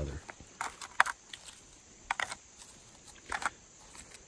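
Shards of a broken jar clinking lightly against each other and the dirt as they are handled and fitted back together, a few separate clinks spread over a few seconds.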